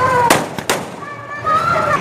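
Two sharp bangs, a little under half a second apart, over a background of voices.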